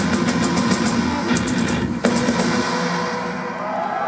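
Heavy metal band playing live through a PA, with pounding drums and cymbals over distorted guitar and bass. There is a brief dip about halfway, and the music eases off slightly near the end.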